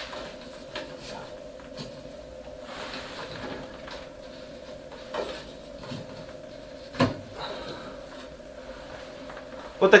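Inspection cap being worked loose and pulled off the flue pipe of a condensing gas boiler: soft scraping and rubbing with small clicks, and one sharp knock about seven seconds in.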